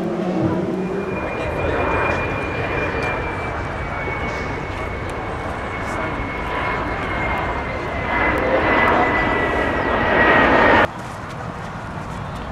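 Aircraft engine noise: a steady rumble with a thin high whine that sinks slowly in pitch, cut off abruptly near the end.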